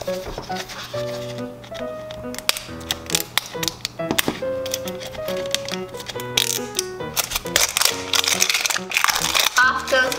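Background music with a simple melody over the crinkling and tearing of a thin plastic wrapper being peeled off a toy surprise ball. The rustling grows louder twice in the second half.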